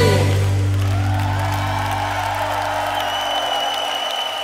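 A live band's final chord held and fading out at the end of a worship song, while the congregation begins to cheer and applaud.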